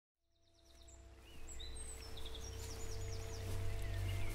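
Birds chirping, with quick high trills and short whistled glides, over a low steady hum. It fades in from silence about a second in.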